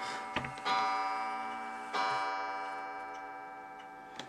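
A clock chiming: two strikes about a second and a quarter apart, each ringing out and slowly fading.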